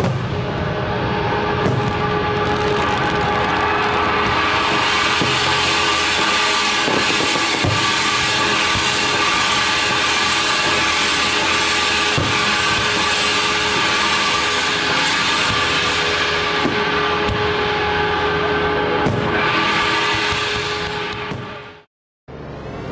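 Music over a loud, dense wash of noise with scattered sharp bangs, consistent with a New Year's Eve fireworks display. It fades out quickly about a second before the end.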